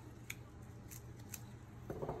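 Spray paint can with its nozzle barely pressed, spitting out a series of short, faint spurts of white paint that land as star dots.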